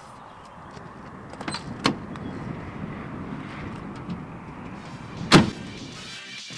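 Ford Mustang's door: a couple of sharp clicks from the handle and latch as it is opened, then, near the end, one loud thud as the door is slammed shut.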